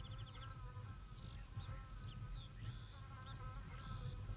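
Faint birdsong of short, separate chirps, opening with a quick trill, over a steady buzzing insect hum.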